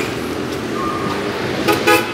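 Busy street traffic with a vehicle horn giving two short honks in quick succession near the end, over steady road noise.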